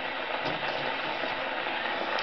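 Gramophone needle running on at the end of a 1925 Odeon 78 record after the music stops: steady record-surface hiss with a few faint ticks, as the needle tracks the run-out groove.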